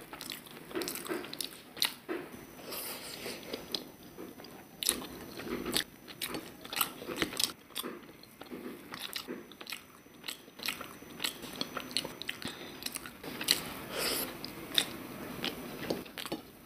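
Close-miked chewing of a mouthful of rice and greens, with many sharp, irregular mouth clicks.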